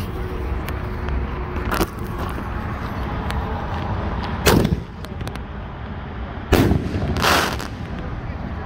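4-inch aerial firework shell fired from a mortar tube: a sharp launch thump about halfway through, then about two seconds later a louder report as the shell bursts, followed by a brief rushing noise.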